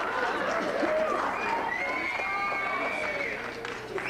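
Several voices talking over one another, indistinct.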